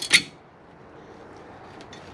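Sharp metallic clinks of a bolt and washer knocking against a metal cooler mounting bracket as the bolt is slid through its hole, loudest just after the start, then a couple of faint ticks near the end.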